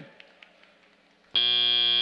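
FIRST Robotics Competition field's end-of-match buzzer, starting suddenly about a second and a third in and holding one steady, bright tone as the match clock hits zero.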